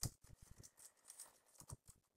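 Near silence with a few faint, scattered ticks: fingertips tapping on an iPad's on-screen keyboard while typing.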